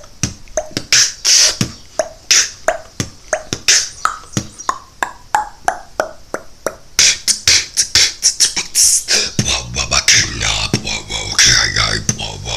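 Beatboxing: rapid mouth-made percussion, sharp clicks and hissy cymbal-like strokes in a steady rhythm, growing faster and denser about seven seconds in. A low bass tone joins about two seconds before the end.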